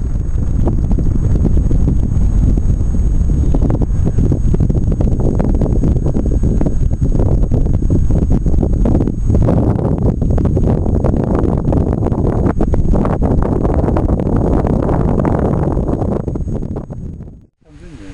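Wind buffeting the camera's microphone, loud and gusty, with most of its noise low down.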